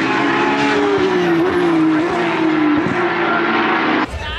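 Racing cars running on the circuit, a loud sustained engine note that sags slowly in pitch.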